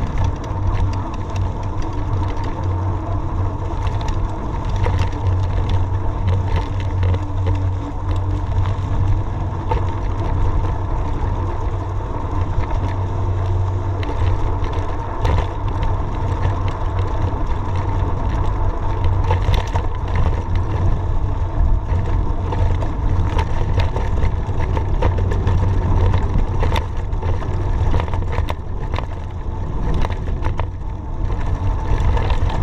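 Steady wind rumble on a bicycle-mounted camera's microphone during a fast downhill on a dirt road. Over it, the bike's tyres run on loose dirt and gravel, with frequent short rattling clicks as it goes over bumps.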